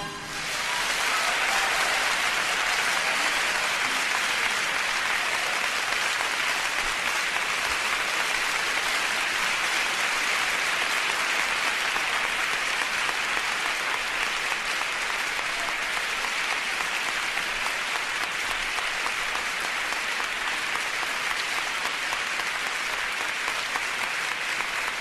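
Live concert audience applauding, building up in the first second as the music stops, then holding steady.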